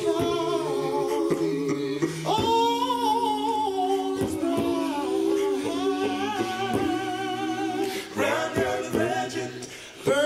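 A small a cappella vocal group, a woman and two men, singing in close harmony in long held chords with a low part underneath. The sound dips briefly just before the end.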